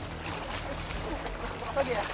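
Water splashing and running as people wade through a shallow rocky river grappling a large python, with short calls from voices over it, the loudest near the end.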